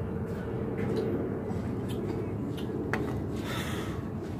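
Steady low outdoor background rumble, with a few faint small clicks and a short breathy hiss near the end.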